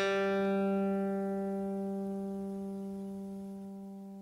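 Open third (G) string of a guitar plucked once as a tuning reference note, ringing on and slowly fading.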